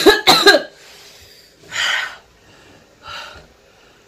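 A woman coughing twice in quick succession, then two breathy exhales, about two and three seconds in, the second fainter. She is coughing from the capsaicin burn of an extremely hot lollipop.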